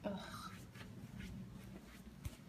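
Faint rubbing and light clicks in a small, empty room, with a brief faint voice-like sound at the very start.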